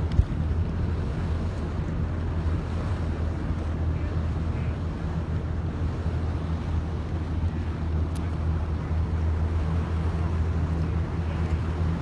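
A boat's engine running with a steady low drone, with wind noise on the microphone over it. There is one sharp knock just at the start.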